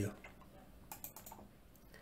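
Faint clicking at a computer: a quick run of four or five light clicks about a second in, and one more near the end.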